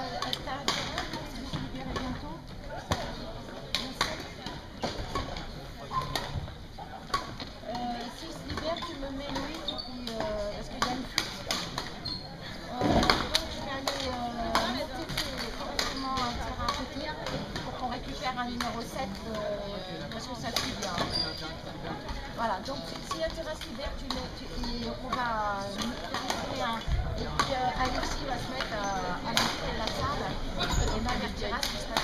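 Badminton hall ambience: a steady murmur of voices with sharp, scattered hits of rackets on shuttlecocks from nearby courts, echoing in the gym.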